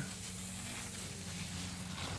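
A low steady hum under a faint, even hiss.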